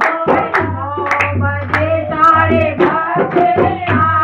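Women's voices singing a Hindi devotional Shiv bhajan in unison, with rhythmic hand clapping and the beats of a dholak.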